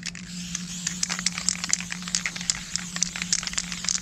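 Aerosol spray-paint can being shaken, its mixing ball rattling in a steady run of sharp clicks about three or four a second.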